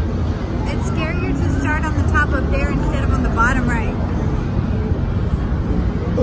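High, wavering voices from about one second in to about four seconds in, over a steady low fairground rumble.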